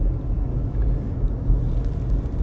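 Steady low road and engine rumble heard from inside the cabin of a car driving along a city street.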